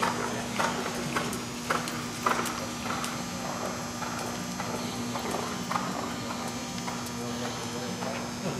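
Hoofbeats of a thoroughbred horse cantering on the sand footing of an indoor arena, a stride about every half second, louder in the first few seconds and fainter as the horse moves away.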